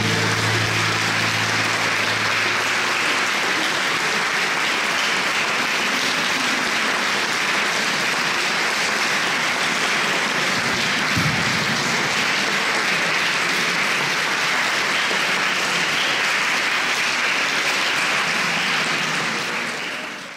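Live audience applauding steadily at the close of an opera duet with piano. The last low notes of the music die away under it in the first few seconds, and the applause fades out at the very end.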